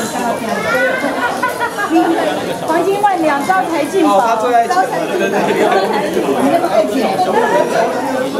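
Overlapping chatter of several people talking at once in a large room, steady throughout with no single voice standing out.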